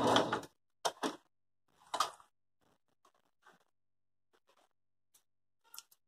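A few short clicks and handling sounds as sewn fabric scraps are freed from under a domestic sewing machine's presser foot: two clicks close together about a second in, another at two seconds, then only faint ticks.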